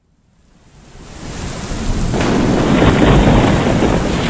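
Rainstorm sound effect: heavy rain with rumbling thunder, fading in from silence over the first two seconds and then running steadily loud.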